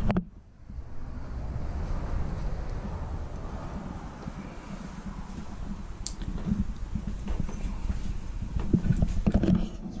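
Low rumble and irregular soft knocks of a handheld camera being carried through a travel trailer, with a single sharp tick about six seconds in.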